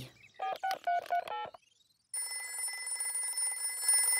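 Mobile phone keypad beeps as a number is dialled, about eight quick tones, then about two seconds in a telephone bell starts ringing steadily: the call ringing on the green rotary telephone at the other end.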